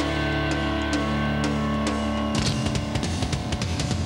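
Rock band playing live, instrumental with no singing: a sustained distorted electric guitar chord rings over a held bass note for about two seconds, then drums and driving electric guitar come in together at full band for the rest.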